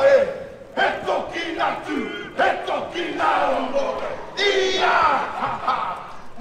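A large group of performers shouting battle cries together, in loud calls of a second or two with short breaks between them.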